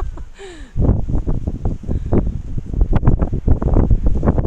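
Wind buffeting the microphone, a loud, gusty rumble that sets in suddenly under a second in. Just before it, a brief falling voice-like sound.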